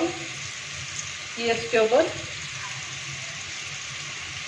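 Chicken liver frying in masala on a flat tawa griddle, a steady sizzle.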